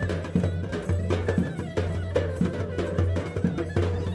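Traditional Bulgarian folk music played on instruments, with frequent drum strokes over a low, pulsing bass.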